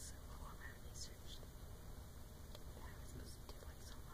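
A woman whispering softly in short hissy bursts, over a low steady background rumble.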